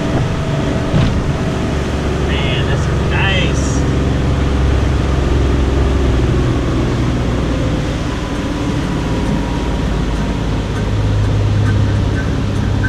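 Rinker Fiesta Vee cabin cruiser's engine running steadily under way: a continuous low drone under a constant rushing noise. A few brief higher sounds come about three seconds in.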